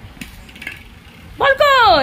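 A few faint light clicks, then near the end one loud, high-pitched, drawn-out call in a voice that falls in pitch: someone calling a toddler with a sing-song "come".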